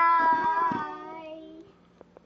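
A child's long, drawn-out, sing-song "bye" that fades away over about a second and a half.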